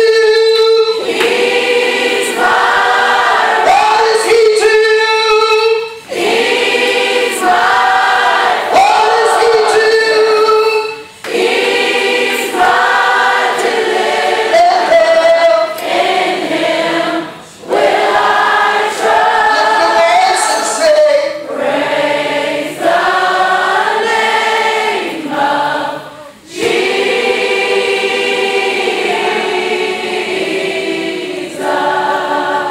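A congregation of mostly female voices singing a gospel praise song together, in phrases separated by brief breaks every few seconds.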